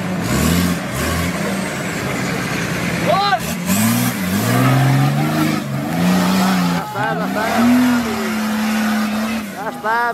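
Off-road 4x4's engine revving hard under load as it climbs a steep dirt bank, its pitch rising and falling several times. Short shouts break in about three seconds in and again near seven seconds.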